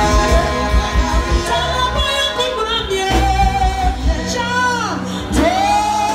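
Live church praise music played through a PA: a voice singing over keyboard and a steady bass line, with a long downward slide in the sung pitch and a rise back up in the second half.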